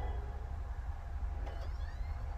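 Steady low room rumble picked up by a camcorder filming a TV screen, with a brief faint high rising squeak about one and a half seconds in.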